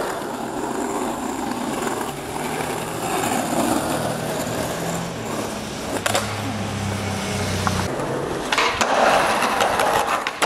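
Skateboard wheels rolling on asphalt street, with the hum of a passing vehicle engine in the middle. There is a sharp clack of the board about six seconds in, and a louder stretch of rolling and clatter near the end.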